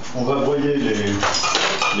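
Dishes and cutlery clinking as kitchenware is handled, with a cluster of sharp clinks and a brief ringing tone from about one and a half seconds in.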